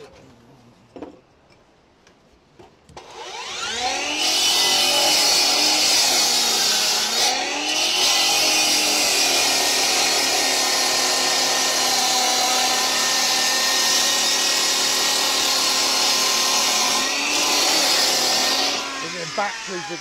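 Cordless battery chop saw with a diamond blade cutting through a brick. The motor spins up about three seconds in and runs loud and steady, its pitch dipping twice as the blade works through the brick, then winds down near the end.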